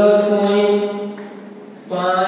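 A man's voice holding a long, steady, drawn-out tone, fading out about a second and a half in; another drawn-out sound starts right at the end.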